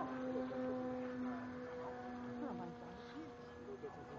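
Motor of a model airplane flying overhead, a steady humming drone that holds its pitch, with faint voices in the background.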